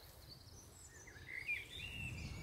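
Faint bird chirps over quiet outdoor background noise, with a short run of calls in the second half.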